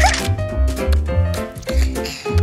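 Upbeat cartoon background music with a bouncing bass line, overlaid with quick swishing sound effects for a fast dash, the first a rising swoop right at the start.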